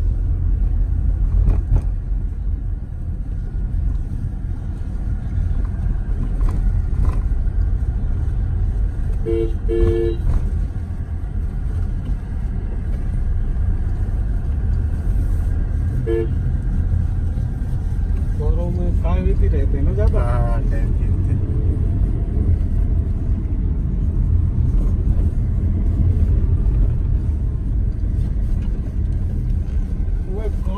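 Steady low road and engine rumble inside a moving car's cabin. A horn gives two short toots about nine to ten seconds in and one more brief toot around sixteen seconds.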